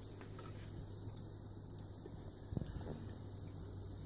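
Quiet room with a steady low hum, and a couple of faint soft knocks a little past halfway as a metal spoon works spaghetti sauce in an enamelled cast iron skillet.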